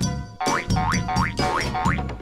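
Playful background music with a steady bass beat and a quick run of about five rising, springy cartoon-style swoops, roughly three a second.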